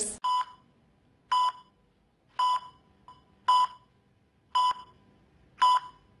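Short electronic beeps, six of them about a second apart, each a brief high tone at the same pitch: the pulse beep of a hospital heart monitor.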